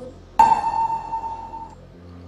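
A single bright ping, a ringing tone that starts sharply about half a second in and fades away over a little more than a second: a chime-like sound effect.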